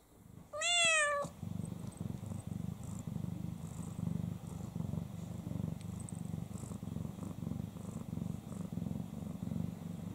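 A heavily pregnant Snow Lynx Bengal cat gives one short meow, rising then falling, about half a second in, then purrs steadily.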